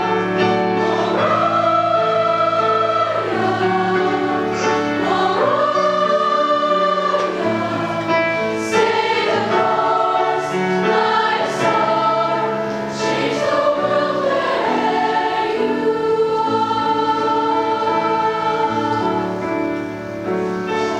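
A high school girls' choir singing in several parts, with long held notes.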